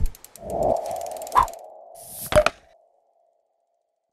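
Synthetic logo-reveal sound effects: a low thump, a fast run of clicks, a held mid-pitched tone with a hit in the middle, then a short whoosh and a final double hit about two and a half seconds in.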